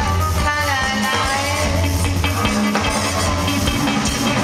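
Live rock band playing loud and continuously: drum kit, guitar and bass.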